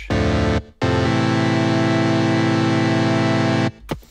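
Native Instruments Massive software synthesizer playing a single raw saw wave from oscillator one with its filters off, bright and brash. There is a brief note, then a longer held one of about three seconds that cuts off near the end.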